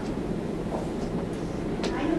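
Steady low rumble of room noise under faint, distant speech, with a sharp click near the end.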